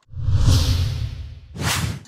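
Whoosh transition sound effect: a swish with a deep low end that fades over about a second and a half, followed by a second short, sharp swish near the end.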